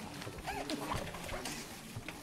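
Faint background voices, with a few light clicks scattered through.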